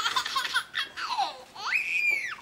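Baby laughing in quick bursts, with a high-pitched squeal near the end.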